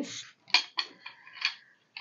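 Two wooden spoons knocking against each other in the hands, about four light clacks over a second, after a short hiss at the start.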